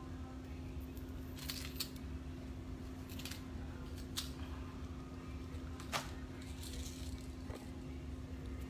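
Costume jewelry and small packaging bags handled on a table: a handful of brief clicks and rustles, spread out, over a steady low hum.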